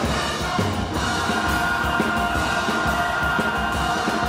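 Large choir singing full-voiced over drums, the voices settling into a long held chord about a second in while the drums keep beating underneath.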